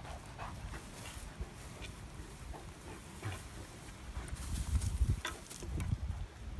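Great Dane chewing and tugging at a large wooden stick: irregular short clicks and cracks of teeth on wood over a low rumble.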